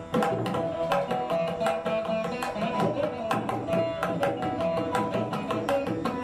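Indian instrumental background music: a hand drum playing quick, steady strokes under a held, winding melody line.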